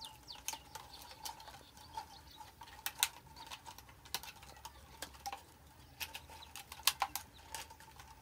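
Thin plastic bottles being handled and worked by hand: irregular light crackles and clicks of the plastic, a few sharper ones a little louder than the rest.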